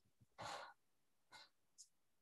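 A short breath out, like a soft sigh, about half a second in. It is followed by a few faint, brief scratches of a felt-tip marker drawing lines on paper; otherwise near silence.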